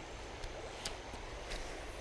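Faint, steady rush of shallow creek water, with a few small clicks.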